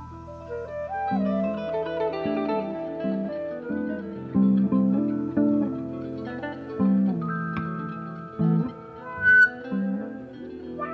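Live band music: an instrumental passage with guitar notes over held chords and a bass line, no singing.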